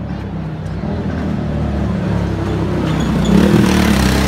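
Motorcycle engine running close by, growing louder toward the end.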